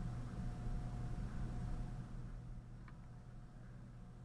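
Steady low room hum with the faint scratch of a felt-tip pen stroking across paper in the first half, then a single small click about three seconds in.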